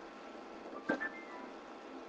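Kodak pocket HD video camera powering on: a small button click about a second in, then a short startup chime of a few quick tones stepping up in pitch.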